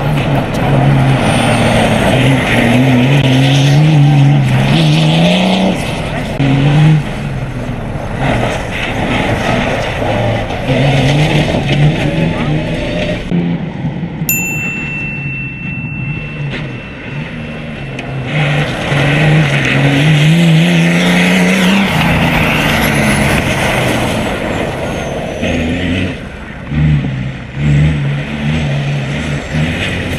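Off-road rally car's engine being driven hard on gravel: the revs climb and drop back again and again as it changes gear. A steady high tone sounds for about two seconds midway.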